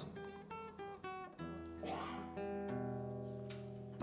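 Acoustic guitar played softly: a few single plucked notes, then low notes or chords struck about a second and a half in and again near three seconds, left to ring.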